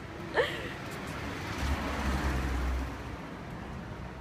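A motor vehicle passing on the street: a low rumble swells about one and a half seconds in and fades just before three seconds, over steady street noise. A brief voice sounds near the start.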